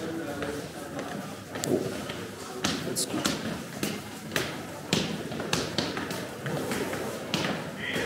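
Footsteps of several people on stone stairs: a run of irregular sharp steps and thuds over a murmur of voices.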